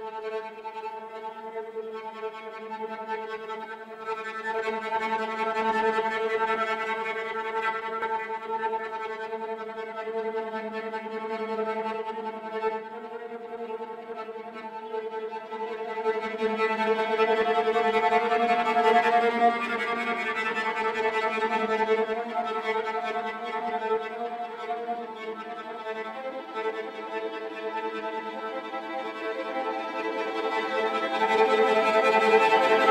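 Cello playing slow, sustained bowed notes, swelling louder in the middle, with a change of pitch about 26 seconds in.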